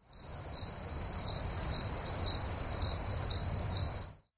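Crickets chirping, a steady high trill pulsing about twice a second over a low background rumble. It starts and stops abruptly.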